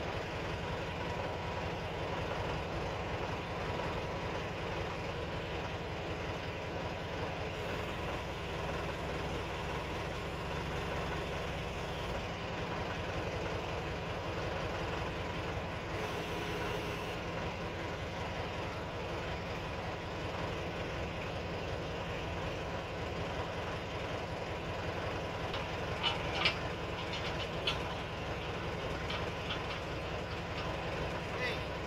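Backhoe loader's engine running steadily while its hydraulic arm is worked, with a few sharp metallic knocks near the end.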